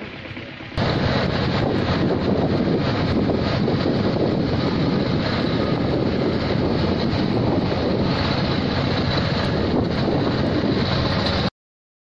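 Loud, steady wind buffeting on the microphone of a camera riding along behind a small cargo vehicle on a dirt track, mixed with vehicle and road noise. It starts abruptly about a second in and cuts off suddenly near the end.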